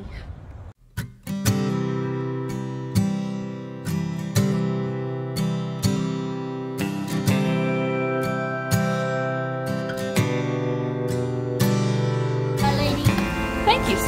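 Background music: a strummed acoustic guitar, starting about a second in. Near the end, outdoor sound and voices come up underneath it.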